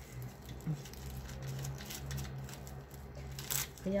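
Thin black plastic mulching film crinkling as it is pulled and torn by hand along its edge, resisting the tear, with one sharp, loud crackle about three and a half seconds in. A man hums a long low note underneath.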